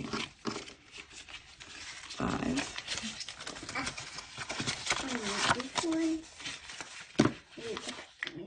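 Paper banknotes rustling and flicking as they are handled, counted and slid into a plastic budget envelope, with a voice murmuring briefly at a few points.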